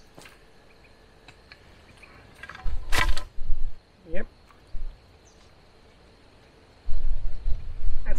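Bolt cutters snapping through a steel chain link: one sharp, loud snap about three seconds in, cutting the chain to length. A short vocal sound follows soon after, and a low rumble near the end.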